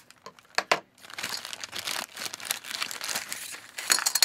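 Thin clear plastic toy bag crinkling as it is torn open and the doll pulled out, with two sharp clicks under a second in.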